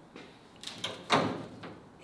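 Cut-off steel roof skin of a 1977 Toyota Celica knocking and flexing as it is lifted off the body by hand: a couple of light knocks, then a louder knock about a second in that rings away.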